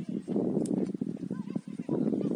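Voices calling and shouting across an outdoor football pitch during play, unclear and overlapping, with no distinct words.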